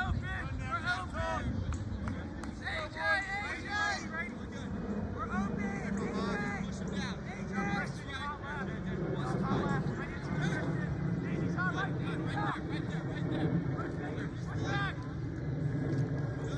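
Indistinct, overlapping shouts and chatter from players and sideline spectators during a youth lacrosse game, with no single clear voice, over a steady low background rumble.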